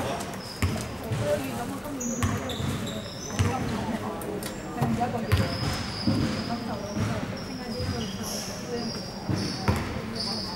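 A basketball bouncing on a hardwood gym floor, one sharp knock after another at uneven intervals, ringing in a large sports hall. Short high squeaks come and go over it, most of them in the second half.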